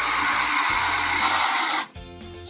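Boost Oxygen canned oxygen hissing steadily out of the canister into its mask while the trigger is held down and the oxygen is inhaled. The hiss cuts off suddenly near the end.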